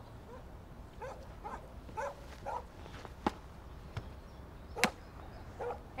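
Red plastic swingball paddles hitting a tethered tennis ball: a few sharp, separate pocks, the two clearest about a second and a half apart in the second half, with faint short chirps in between.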